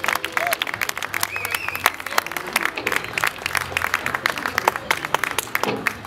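A small audience clapping, a dense patter of claps with a few voices mixed in.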